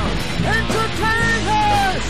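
Full rock band playing: a distorted electric guitar solo carries the melody in held, bent notes that slide down at their ends, over bass and drums.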